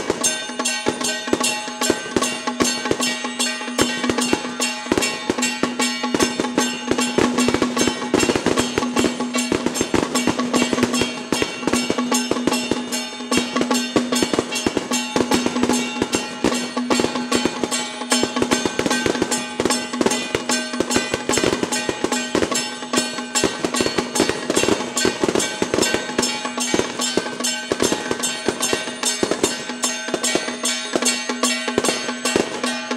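Temple procession music: drums, gongs and cymbals beaten in a fast, dense rhythm over a steady held tone, going on without a break.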